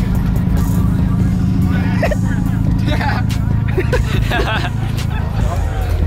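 A car's engine running low and steady as it drives slowly past, under music and the chatter of a crowd.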